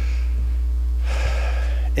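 A man draws an audible breath into a lectern microphone about a second in, with a shorter breath near the start, over a steady low electrical hum from the sound system.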